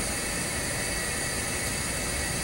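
Steady room-tone hiss with a few faint constant tones, and no other event.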